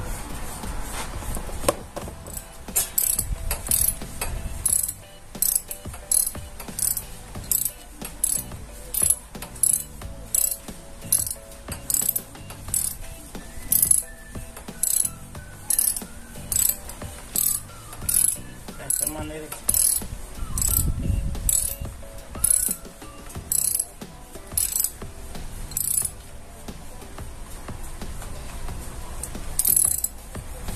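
Ratchet wrench clicking in steady back-strokes, about one and a half a second, as a bolt on a motorcycle's front sprocket cover is run in. The clicking stops a few seconds before the end.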